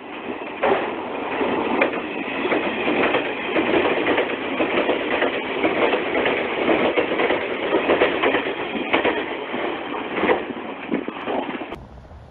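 A JR West 381 series electric express train on an out-of-service run, passing through the station at speed, loud and steady, with sharp clicks as its wheels cross rail joints. The sound cuts off suddenly near the end.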